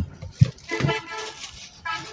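Faint background voices and low shop noise in a short pause between a man's speech.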